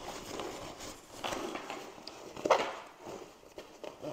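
Backpack fabric rustling as hand-handled straps are pushed into a back compartment, with a couple of short knocks, the louder one about two and a half seconds in.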